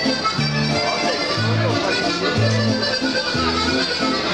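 Carousel music playing, an accordion-like melody over a bass that sounds a note about once a second.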